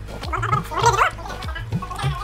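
Wet slurping and sucking of ripe mango pulp straight from the fruit, loudest about half a second to a second in, over background music with a steady beat.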